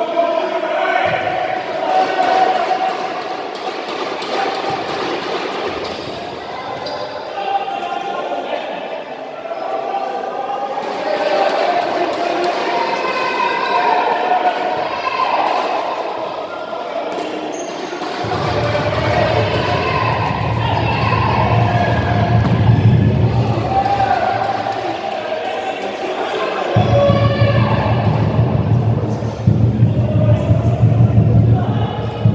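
A futsal ball being kicked and bouncing on a wooden sports-hall floor, with players' and spectators' voices echoing in the hall. A low rumble comes in a little past halfway, breaks off briefly, then returns near the end.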